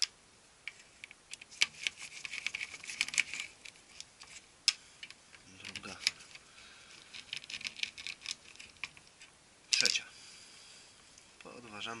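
Steel screwdriver clicking and scraping against the plastic housing and the metal-backed cleaning blade of a Konica Minolta DR-311 drum unit as the blade is pried up. It makes a run of small irregular clicks and rattles, with one louder click near the end.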